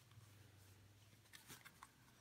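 Near silence: room tone with a faint steady low hum and two faint ticks about one and a half seconds in.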